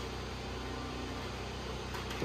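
Steady low machine hum with an even hiss behind it, unchanging throughout, with no distinct knocks or clicks.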